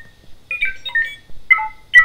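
Astromech droid beeping and whistling in the R2-D2 manner: quick clusters of short electronic chirps, many stepping down in pitch, answering a question put to it.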